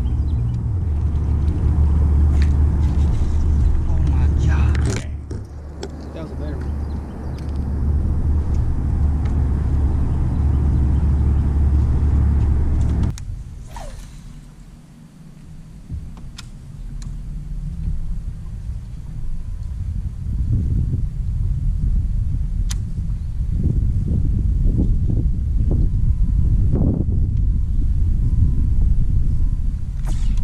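Low wind rumble on an open-air camera microphone on a boat deck: steady and heavy at first, cutting off suddenly about a third of the way in. It then returns as a gusty, uneven rumble with a few faint clicks.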